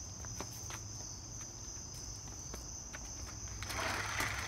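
Steady high-pitched chorus of crickets over a low hum, with a few faint clicks and a burst of rustling noise near the end.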